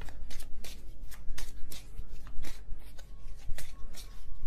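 Tarot cards being shuffled and handled, a run of quick, irregular papery snaps and flicks a few times a second.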